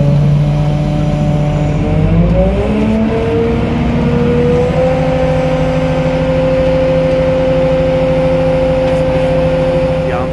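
A Kato mobile crane's diesel engine running under load while it lifts a bundle of shuttering timber. Its revs rise over about three seconds, starting around two seconds in, then hold steady at the higher speed.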